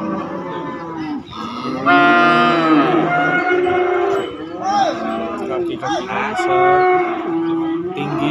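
Cattle mooing: a run of several drawn-out moos, some overlapping, the loudest beginning about two seconds in.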